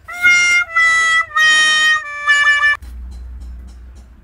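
Comic 'wah-wah-wah-waah' sad-trombone style sound effect: four held brassy notes, each stepping a little lower in pitch, the last one wavering. It ends sharply about three seconds in.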